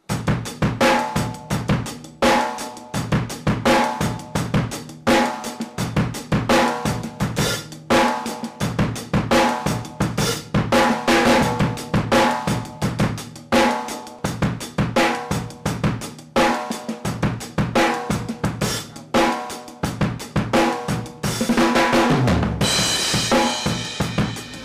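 Drum kit playing a steady rock groove: sixteenth-note hi-hat, snare backbeat on two and four, and bass drum, with the hi-hat opening on the "e" of beat three. It ends on a crash cymbal ringing out near the end.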